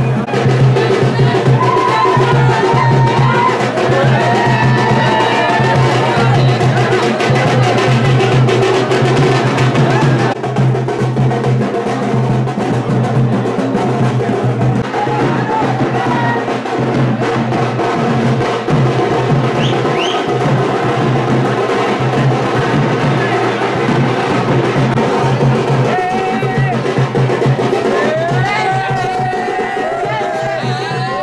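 Loud, continuous music with rhythmic drumming, with crowd voices near the start and again near the end.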